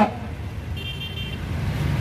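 Low outdoor rumble with a brief, high-pitched vehicle horn toot just under a second in, lasting about half a second.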